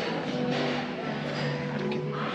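Background music with held notes playing in a café-bar, over a low murmur of the room.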